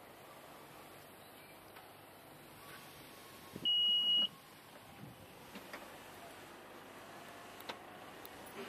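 A single steady electronic beep, about half a second long, from the Honda Pilot's power tailgate warning buzzer as the tailgate is triggered to open. A few faint clicks follow as it rises.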